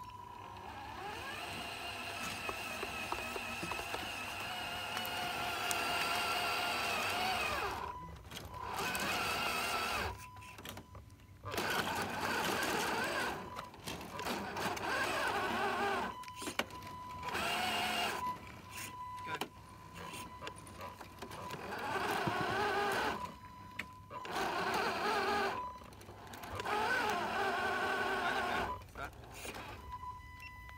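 Radio-controlled semi-truck's electric motor and gearbox whining, rising in pitch over the first several seconds as it speeds up. After that it runs in bursts of a few seconds with short pauses as the truck drives and stops.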